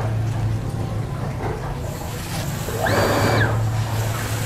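Water hissing through a barely opened ball valve on a house water line, building up about two seconds in and swelling a second later, over a steady low hum. The flow is only a small leak, too little to trip the pump's flow switch, so the pump does not cut in.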